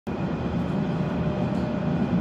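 Moving train heard from inside the carriage: a steady low rumble with a faint steady hum over it.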